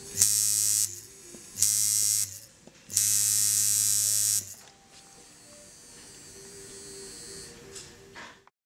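Coil tattoo machine buzzing in three short runs, the last one longest, as it is switched on and off from its power supply.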